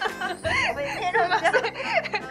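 People laughing in bursts, starting about half a second in, over steady background music.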